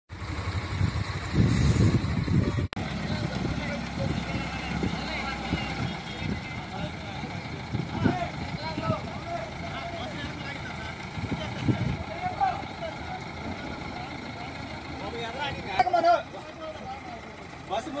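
Roadside vehicle noise: a low rumble, loudest in the first few seconds, with people talking in the background.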